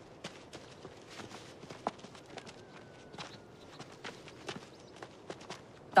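Footsteps of several people walking, a faint irregular run of light steps.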